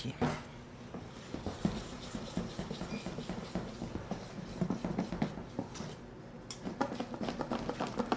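Batter being mixed by hand in a stainless steel bowl: a utensil scrapes and rubs against the metal in quick, irregular strokes.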